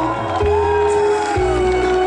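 Live stage music: a man singing into a microphone, drawing out one long falling note over an electronic backing track of held chords and a steady bass line, with crowd noise from the audience.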